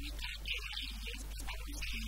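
A woman's voice, faint and thin, talking, over a steady low electrical hum.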